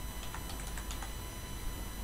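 Computer keyboard being typed on: a quick run of keystrokes in the first second, as characters are entered into a password field.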